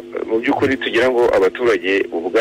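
Speech only: a voice talking in a radio news report, with no other sound standing out.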